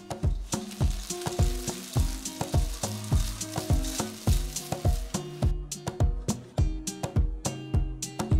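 Hot jaggery syrup sizzling and bubbling in a pan as it is stirred; the sizzle dies away about five and a half seconds in. Plucked guitar music plays throughout.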